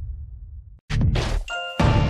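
Intro sound effects: a low boom fading away, then a sudden noisy hit about a second in, followed by a short bell-like ding and another hit near the end.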